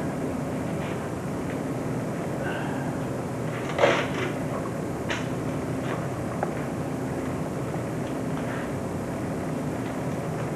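Steady low room hum, with a short scraping rustle about four seconds in and a few light clicks, from hands handling a small model space shuttle and salt.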